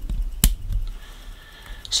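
A single sharp click about half a second in, over a faint low rumble.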